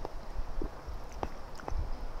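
Soft mouth clicks and smacks as a mouthful of white wine is tasted, four or so spread over two seconds. A low rumble runs underneath.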